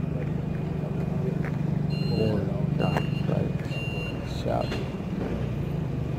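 A motor vehicle engine idling steadily, with a few short high beeps repeating about once a second midway through.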